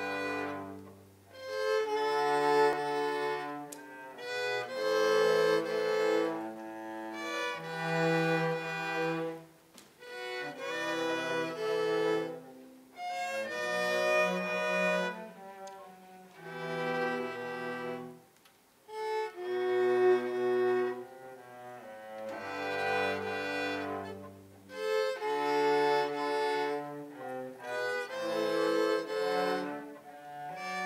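School ensemble of violas and cellos playing a piece with bowed strings. It plays in phrases a few seconds long, with brief pauses between them, and low cello notes sit under the higher viola lines.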